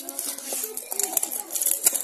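Children's voices in the background, with a few sharp clicks and taps as a steel tiffin box and a plastic food container are handled.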